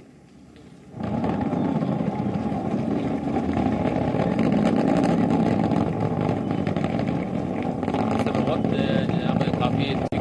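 Steady, dense rocket noise from the GSLV Mk III's two S200 solid boosters as the rocket climbs just after liftoff, setting in about a second in after a brief quiet.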